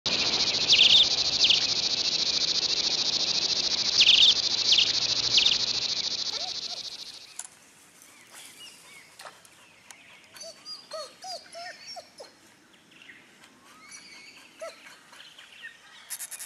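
A loud, steady high insect buzz with repeated sweeping calls over it fades out about seven seconds in. Scattered short bird chirps and whistles follow at a much lower level.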